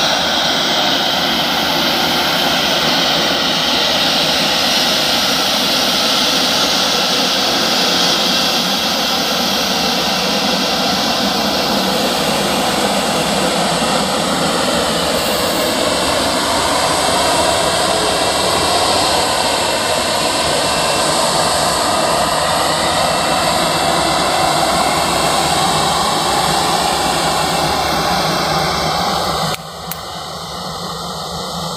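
Boeing 737-800's CFM56 turbofan jet engines running at taxi thrust as the airliner rolls along the runway and turns at its end: a loud, steady jet roar with a slowly shifting whine. The sound drops abruptly just before the end.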